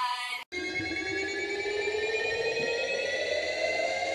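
A steady buzzy tone with many overtones, slowly rising in pitch for about three and a half seconds. It begins after a brief break about half a second in.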